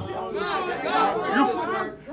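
Speech only: quieter talking, with more than one voice at once, between louder stretches of preaching.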